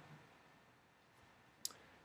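Near silence: room tone, broken by a single short click about one and a half seconds in.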